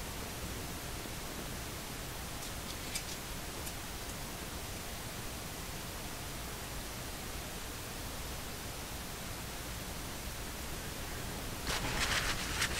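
Steady background hiss, with a few faint ticks about three seconds in. Near the end comes a short burst of rustling and crinkling as a gloved hand handles a paper towel.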